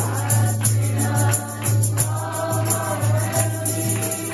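A group of people singing a worship song together to an acoustic guitar, with a shaken hand percussion instrument keeping a steady beat.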